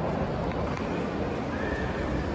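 Steady background hubbub of a busy indoor shopping mall, with a brief faint high tone near the end.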